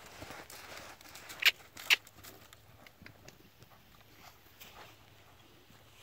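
Hoofbeats of an Appaloosa mare cantering on arena sand, soft and scattered, with two sharp knocks about a second and a half and two seconds in.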